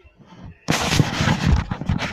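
Loud rustling and thumping of a phone being grabbed and moved, its microphone rubbed and knocked. It starts suddenly under a second in and goes on.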